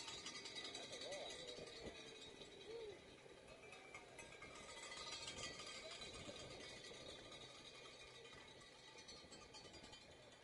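Faint, distant voices, with faint music under them.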